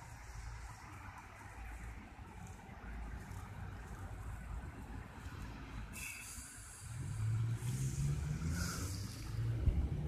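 Street traffic: a low rumble throughout, then a motor vehicle's engine hum growing louder from about seven seconds in as it draws near.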